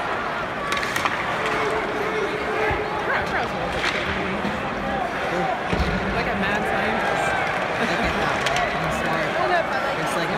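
Hockey arena crowd during live play: a steady din of many voices talking and calling out at once, with a few brief sharp knocks.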